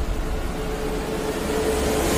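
Soundtrack of a car commercial: a steady held tone over a low hiss, swelling slightly toward the end, in a lull between louder music.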